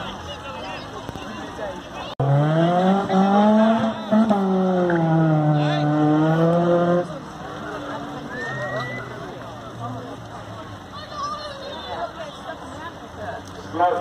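A car engine revved hard: it cuts in suddenly about two seconds in, its pitch climbs quickly, then holds high and steady for several seconds before cutting off sharply. Afterwards a lower, fainter engine note runs steadily.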